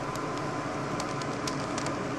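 V-Cube 5x5 puzzle cube's plastic layers being turned by hand: a string of faint, irregular clicks over a steady hiss.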